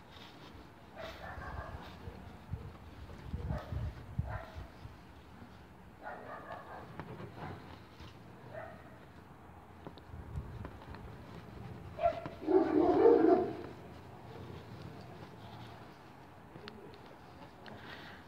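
Intermittent animal calls in short, separate bursts; the loudest comes about twelve and a half seconds in.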